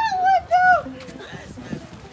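Children's high-pitched whoops and squeals, three or four short rising-and-falling cries in the first second, then dying down to murmured chatter.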